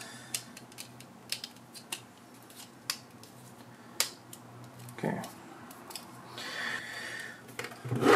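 Plastic drive tray of a Synology DS220+ NAS clicking and snapping as it is pressed onto a 3.5-inch hard drive: a scattered series of sharp ticks, the loudest about four seconds in, followed near the end by a short stretch of rubbing.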